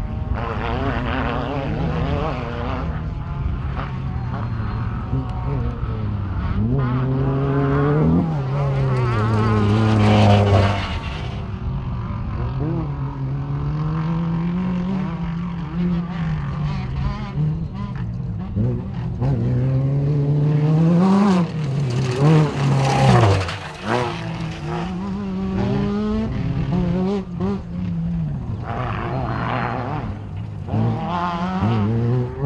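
Off-road race vehicles passing on a dirt course, their engines revving up and falling back through gear changes as each one comes through. The engines are loudest around 8 to 10 seconds in and again around 21 to 23 seconds.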